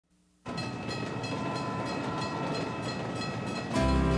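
A freight train rolling through a level crossing, with the crossing bell ringing in regular strokes about three a second over the rumble of the cars. Music comes in near the end.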